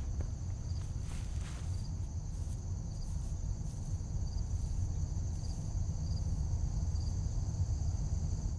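Field insects trilling steadily in a high, continuous buzz, with a faint pip about once a second, over a low rumble: summer field ambience.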